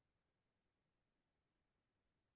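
Near silence: the microphone is effectively muted, with no audible sound.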